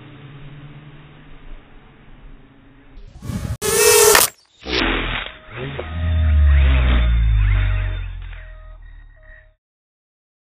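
Small racing quadcopter flying and crashing into a gate: a loud burst about three seconds in, then a clattering, low rumble that fades and cuts off suddenly near the end.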